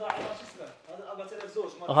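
Only speech: a man's voice talking quietly, as if at some distance from the microphone.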